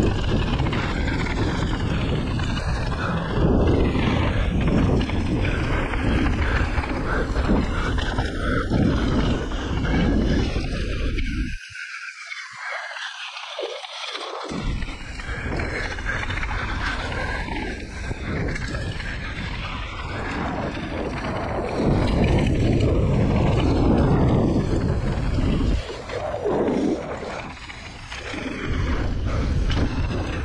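Mountain bike descending a dirt trail, heard from a bike-mounted or helmet camera: continuous wind rush over the microphone with the tyres rumbling on dirt and the bike rattling. The low rumble cuts out for about three seconds near the middle.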